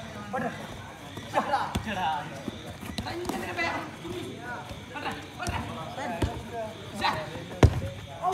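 Sharp thuds of a football being kicked on an artificial-turf pitch, several times, the loudest near the end, among players' shouts and calls.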